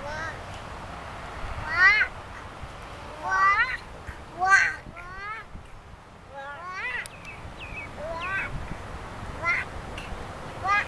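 Toddlers' high-pitched babbling and squeals: about eight short calls that rise and fall in pitch, coming every second or so.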